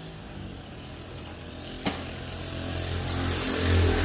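A passing motor vehicle's engine, getting steadily louder over the second half, with a single sharp click about two seconds in.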